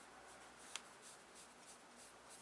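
Faint strokes of a water-brush pen on drawing paper, blending water into sign-pen colour, with one short sharp click a little under a second in.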